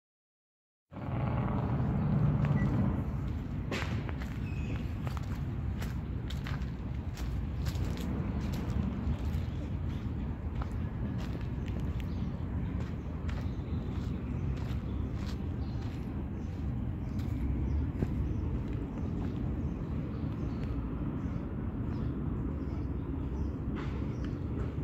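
Outdoor ambience recorded while walking with a handheld camera: a steady low rumble of wind on the microphone, with scattered sharp ticks of footsteps and handling. The sound cuts in abruptly about a second in.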